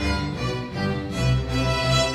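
Youth string orchestra of violins, cellos and double bass playing a bowed piece, with a low bass line moving note by note under sustained upper strings.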